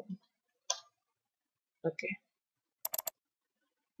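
Computer mouse clicking: three quick clicks in a row about three seconds in.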